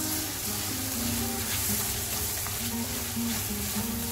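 Thick black carrot halwa sizzling in a nonstick wok as a spatula stirs and scrapes through it, with background music playing.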